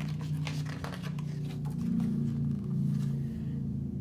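Paper pages of a picture book rustling and crackling as a page is turned, mostly in the first second or so, over a low steady hum.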